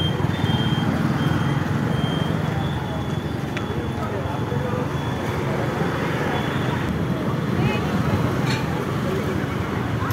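Street traffic heard from a moving two-wheeler: a steady engine hum with road noise, passing vehicles and voices of people on the street. A repeated high beep, about twice a second, stops about two seconds in.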